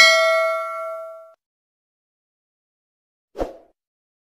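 Notification-bell 'ding' sound effect from a subscribe-button animation. It rings out clearly and fades away within about a second and a half. A short, muffled sound effect follows near the end.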